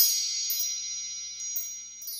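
A shimmering chime sound effect: several high bell-like tones held together with small twinkles above them, fading out.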